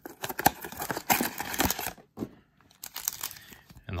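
Thin cardboard trading-card hanger box being torn open by its perforated tab, with crackly crinkling of the card packs inside; the handling stops briefly about two seconds in, then picks up again.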